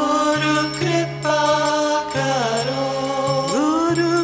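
A woman singing a Hindi devotional bhajan in a chant-like melody over a steady low drone and instrumental accompaniment, her voice gliding up in pitch near the end.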